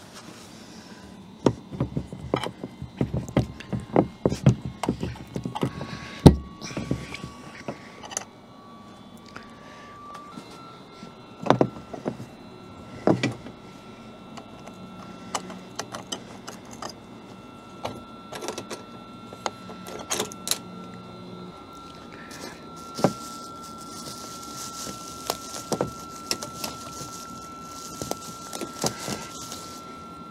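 Padlocks and their plastic-bag covers being handled at the latches of a hitch-mounted cargo box: irregular metal clicks and knocks, the loudest about six seconds in, with rustling toward the end.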